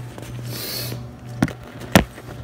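A stainless mesh strainer being handled and set down on cookware: two sharp knocks about half a second apart near the end, the second the louder. A low steady hum runs underneath.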